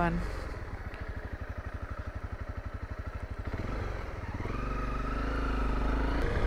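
Honda CRF250L's single-cylinder four-stroke engine ticking over with a fast, even pulsing beat. From about four and a half seconds in it revs up and the bike pulls away, the engine note rising in pitch.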